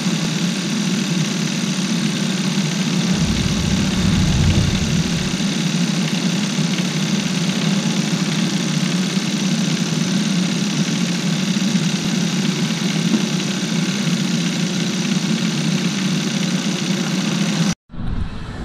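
2012 Kia Rio's GDI four-cylinder engine idling steadily while its cooling system is bled of air, the upper radiator hose being squeezed to work out the bubbles. A deeper rumble joins in about three seconds in for a couple of seconds.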